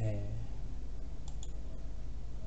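Computer mouse clicked twice in quick succession about halfway through, over a steady low hum, just after a brief voiced murmur at the very start.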